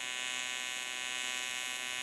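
AC TIG welding arc on aluminum, from an Everlast PowerTIG 255EXT, buzzing steadily while a bead is run and filler rod is fed in.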